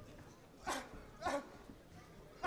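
Two short, sharp vocal shouts about half a second apart, over a low background.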